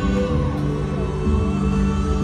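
Live acoustic-guitar song heard from the crowd in a stadium, with held notes ringing through the sound system.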